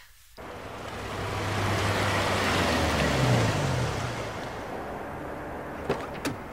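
A car on the street, its engine hum and tyre noise swelling to a peak about three seconds in and then easing off; a sharp click, like a car door, at the very end.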